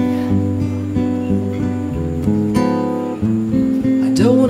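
Solo acoustic guitar strumming chords between sung lines, with a change of chord a little past halfway.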